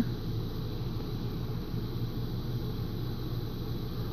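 Steady low background hum with a faint hiss, even throughout with no distinct events.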